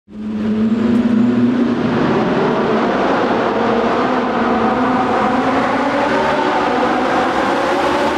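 Ferrari 458's V8 engine running loud and steady as the car drives through a road tunnel, its note echoing off the tunnel walls.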